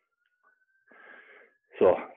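A man's heavy breath after high-intensity squat jumps: a faint out-of-breath exhale about a second in, the breathing of hard exertion.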